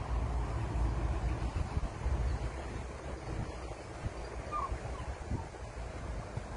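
Wind buffeting the microphone in a steady low rumble, with one short faint call about four and a half seconds in.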